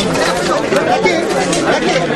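Many people talking over one another at once: steady crowd chatter with no single voice standing out.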